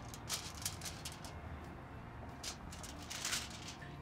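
Faint handling sounds of gloved hands wrapping raw bacon around a sausage-covered jalapeño: a few soft, scattered ticks and rustles, the clearest about three seconds in.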